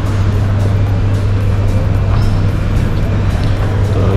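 Steady low mechanical hum over an even rush of noise, from a moving walkway running in a large terminal hall.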